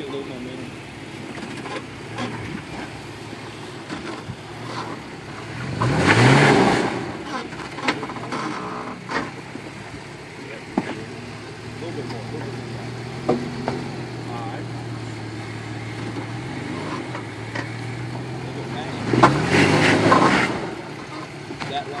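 Toyota FJ Cruiser's 4.0-litre V6 idling at a low crawl, revving up in two rising bursts: about six seconds in and again near the end, as the truck is driven over the rocks. A few sharp knocks and clicks sound in between.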